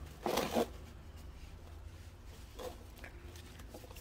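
A brief rustling scrape of hands working at a potted plant near the start, then a fainter rustle a couple of seconds later, over low room hum.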